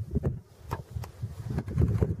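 Wind buffeting the phone's microphone in low, irregular gusts, with a few light knocks from the phone being handled.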